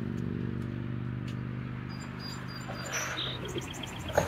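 Birds chirping outdoors: short high chirps from about halfway in, then a quick run of chips near the end. A steady low hum runs underneath and fades near the end.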